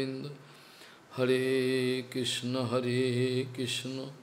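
A man chanting Sanskrit prayer verses on a level, held pitch. There is a short pause for breath about a second in.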